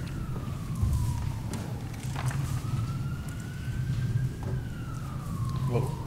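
An emergency vehicle's siren wailing, faint and far off, its pitch slowly falling, rising and falling again in sweeps of about three seconds, over a steady low room hum.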